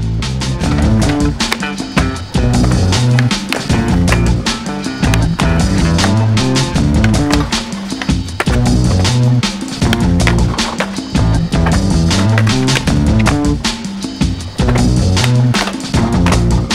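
Skateboard on urethane Ricta Speedrings wheels rolling on concrete, popping, landing and grinding a metal rail, under loud music with a steady beat.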